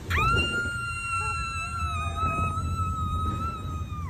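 A woman screaming at full power: one long, high, steady scream of nearly four seconds that starts suddenly and falls away at the end, over the low rumble of the water ride.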